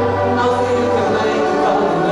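Live band music with long held chords.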